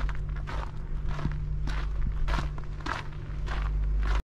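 Footsteps of a person walking on a fine gravel towpath, about two steps a second, over a steady low rumble.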